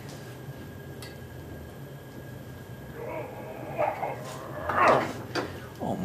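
A man straining and grunting with effort while pulling on a pipe wrench to break loose a rusted-in fitting on a small engine's cylinder head. A steady low hum runs underneath, the effort sounds come in the second half, and an "Oh" ends it.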